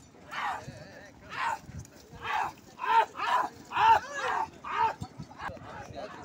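Men's short, repeated shouts, each rising then falling in pitch, about one to two a second, urging on a yoked pair of bulls dragging a stone block; the calls grow sparser near the end.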